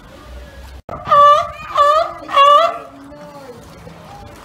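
Sea lion barking three times in quick succession, starting about a second in. Each call is a short, pitched bark about half a second long.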